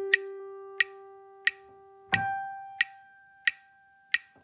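Metronome clicking steadily at about 90 beats per minute over a sustained pitch-reference tone on G that fades away, then jumps up an octave to high G about two seconds in and fades again: the reference for a flute octave slur from low G to high G.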